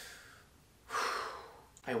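A man's dramatic, breathy gasp of awe: a soft breath at first, then a sharper, louder breath about a second in that fades out over most of a second.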